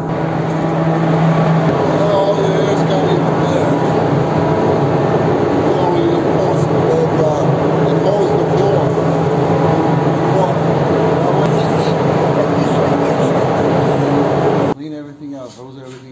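Paint spray booth's main exhaust fan running: a loud, steady rush of air with a low hum, cutting off suddenly near the end.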